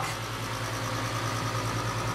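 Steady hum of a saltwater aquarium's sump equipment, the pump running with water flowing and bubbling through the rock filter chambers.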